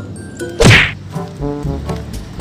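A loud, short whoosh-and-thwack sound effect a little over half a second in, the loudest thing here, set over background music. The tinkling tune before it gives way to a rhythmic one just after.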